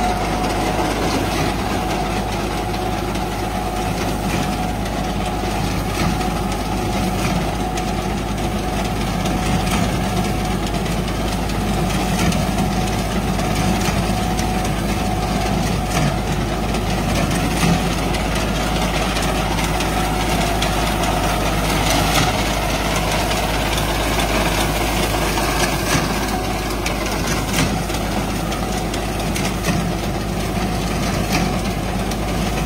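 Tractor diesel engine running steadily under load, driving a tractor-mounted reaper whose mechanical clatter mixes with the engine as it cuts through standing wheat.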